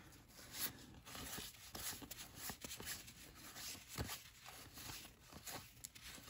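Faint rustling and scraping of a stack of baseball cards being slid apart and flipped through by hand, with a few soft clicks of card edges and one sharper tap about four seconds in.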